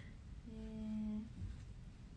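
A woman's short closed-mouth "hmm" hum at one steady pitch, lasting under a second, a thinking hum while she weighs what to eat.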